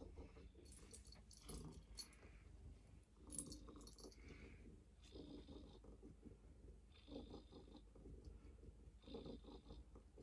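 Near silence: faint, soft sounds of a pet cat being stroked and then picked up and hugged, with a few short soft noises about every two seconds in the second half.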